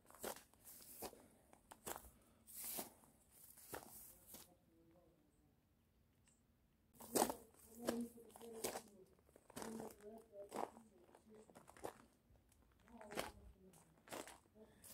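Faint, irregular footsteps crunching on rubble and undergrowth, with a pause of near silence in the middle.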